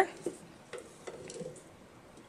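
Faint handling sounds of a wooden stick shuttle and yarn being passed through the warp threads of a wooden frame loom, with a few light clicks and soft rustling.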